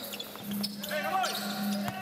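Basketball dribbled on a hardwood court, a few sharp bounces, with faint voices in the background.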